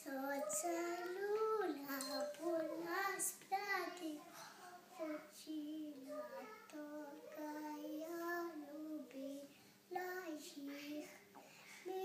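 A young girl singing a song alone with no accompaniment, in held, wavering notes phrase after phrase, with short pauses for breath.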